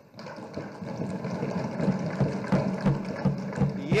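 Many legislators thumping their desks in applause, a dense irregular clatter that builds up over the first second or so and then carries on steadily.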